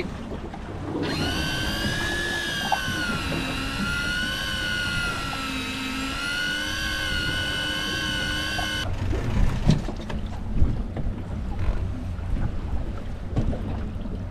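Electric deep-drop fishing reel's motor winding in line with a fish on after a bite: a high, steady whine that sags slightly in pitch in the middle and comes back up, cutting off abruptly about nine seconds in. After it come wind and water noise and a few knocks.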